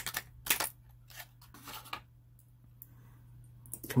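A few short clicks and rustles of handling, mostly in the first two seconds: plastic packaging handled and small die-cast metal toy cars picked up and set down on a tabletop. Then only faint handling sounds.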